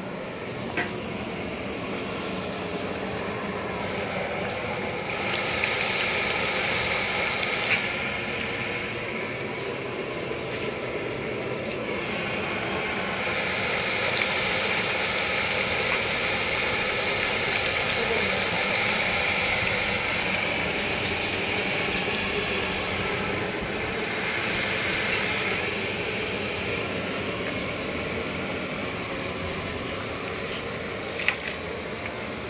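Steady hiss of a large iron wok of curry cooking over a gas burner fed from a cylinder, swelling louder a few times.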